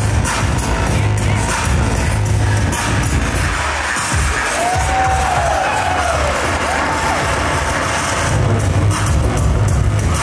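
Electronic music with a steady beat and heavy bass; the bass drops out briefly about four seconds in, and gliding rising-and-falling tones sound through the middle.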